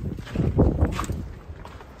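Footsteps of a person walking, several steps in the first second, then quieter.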